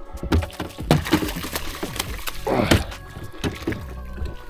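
A muskie thrashing and splashing in a landing net at the side of the boat, with irregular knocks and clatters of the net and rod against the hull and a short rush of splashing about two and a half seconds in.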